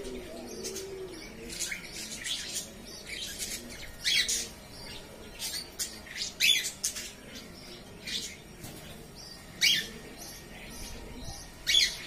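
A flock of budgerigars chirping: short, sharp, high calls at uneven intervals, a few of them much louder than the rest.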